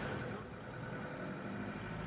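A steady, low background hum, like a running engine or motor, with no sudden sounds.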